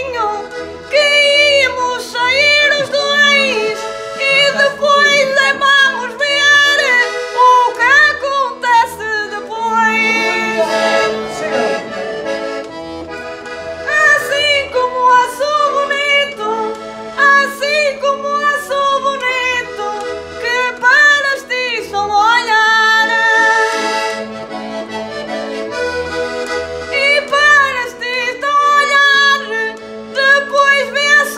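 Concertina (diatonic button accordion) playing an instrumental passage between sung verses: a quick, ornamented melody over a steady pulsing bass-and-chord accompaniment.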